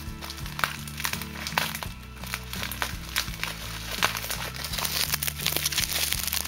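Plastic packaging crinkling and clicking as it is handled and unwrapped, over background music with a steady, stepping bass line.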